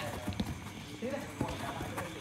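Players running and touching the ball on artificial turf: a few soft thuds of feet and ball, with voices calling in the background.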